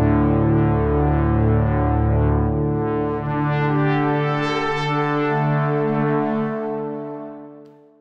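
Yamaha SY77 FM synthesizer playing a brassy, analog-style pad patch as sustained chords. The chord changes about three seconds in, the tone brightens through the middle, and the sound fades away near the end.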